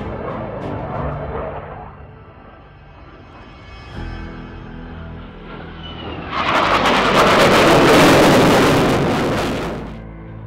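Background music, joined about six seconds in by the loud noise of an F/A-18 Hornet's twin F404 jet engines in afterburner as it pulls up. The jet noise swells to a peak and fades away just before the end.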